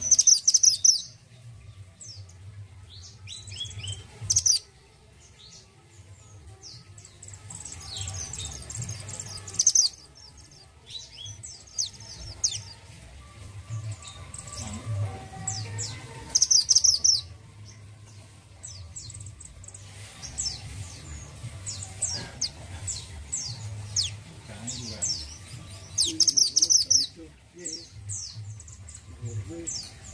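Caged male minivet, the bird keepers call mantenan gunung orange, singing in repeated bursts of high, quick downslurred chirps every few seconds, over a low steady hum.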